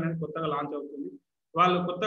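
Only speech: a man narrating in Telugu, with a drawn-out syllable that trails off about a second in, a brief dead gap, and the voice resuming just before the end.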